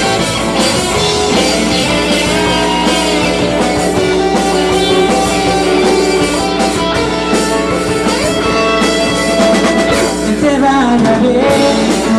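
A live rock band playing: electric guitars over a drum kit, a steady full sound with long held notes.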